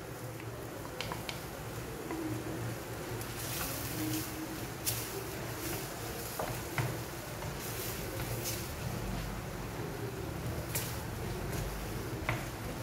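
A wooden spatula stirring and scraping a thick vegetable and potato filling in a stainless steel frying pan, with occasional light taps against the pan, over a low steady hum.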